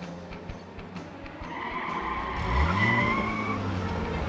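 Cartoon car sound effect: a high steady tyre squeal with a car engine revving up under it from about halfway through, as the car skids in to a stop.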